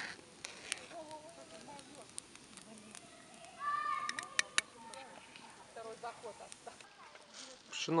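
Two sharp metallic clicks a little over four seconds in, as a metal spoon is knocked against and laid on the rim of a metal cauldron. Just before the clicks, a faint, distant pitched call is heard.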